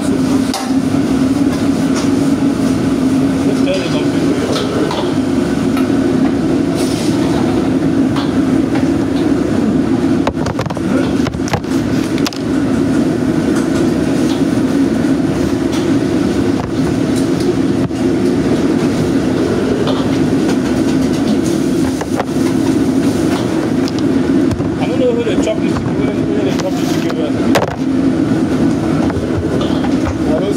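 Steady, loud roar of a commercial gas wok range and its kitchen extraction, with a few sharp metal clanks from the wok and ladle.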